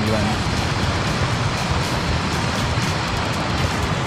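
Steady rushing of stream water pouring over a small concrete weir, an even wash of noise that holds at one level.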